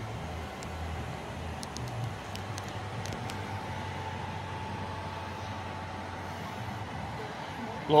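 Steady low mechanical hum with a faint held whine above it, like running machinery; a few light ticks sound between about one and a half and three and a half seconds in.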